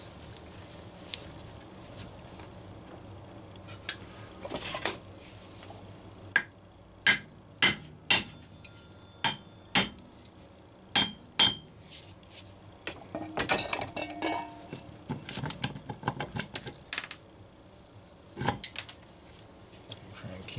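A hammer tapping the cylinder of a Homelite VI-955 chainsaw engine to break the cylinder gasket loose. There are about a dozen sharp, light taps in small clusters, some ringing briefly, followed by a stretch of clatter.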